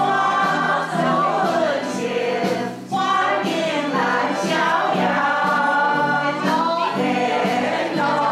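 Music with a group of voices singing together, continuing without a break.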